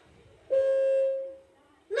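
A single steady horn-like tone, held about a second and then fading out, from the played-back story recording.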